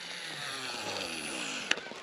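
Baitcasting reel being wound in, a faint steady whirr, with one sharp click near the end.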